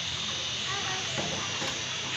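Steady high-pitched drone of insects (crickets or cicadas) in the surrounding forest, an even hiss with no breaks.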